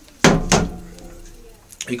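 Two sharp knocks on metal about a quarter second apart, followed by a short ringing that dies away over about a second.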